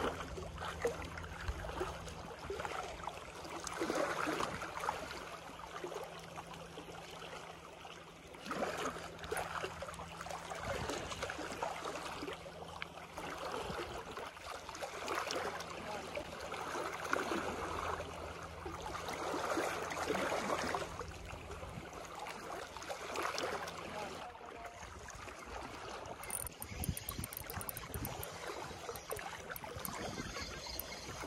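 Small sea waves lapping and washing against a rock seawall, swelling and easing every few seconds, over a low steady hum that stops near the end.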